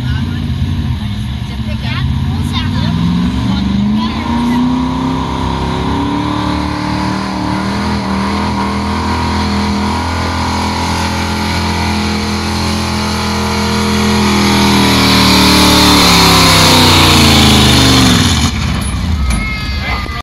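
1981 Ford F-150 pickup's engine at full throttle pulling a weight-transfer sled. It rises in pitch as the truck takes off, holds high under load and gets louder toward the end of the pull, then drops away suddenly near the end as the pull finishes.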